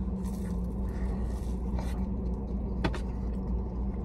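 Steady low hum of a car inside its cabin, with faint chewing of a crispy fried egg roll and a brief click about three seconds in.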